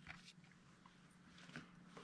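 Near silence: faint room tone with a low steady hum and a few soft ticks.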